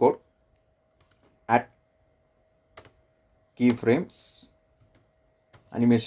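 Computer keyboard typing: a few faint, scattered keystrokes between short spoken words.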